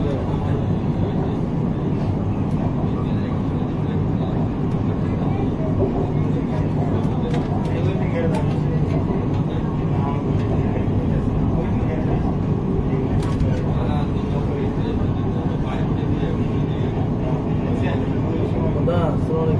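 Steady low rumble of an MRT metro train running along elevated track, heard from inside the front car.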